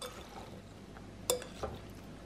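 Dressed salad being tossed with a metal utensil in a glass bowl: a soft rustle of wet leaves, with a sharp clink of metal on the glass about a second in and a lighter tap just after.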